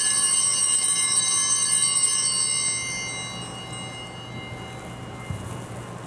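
Altar bells rung at the elevation of the chalice after the consecration, ringing out and slowly dying away over about four seconds.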